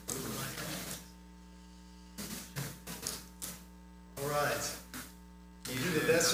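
Faint, steady electrical mains hum with a stack of evenly spaced tones, broken by a few short, indistinct voices and noises.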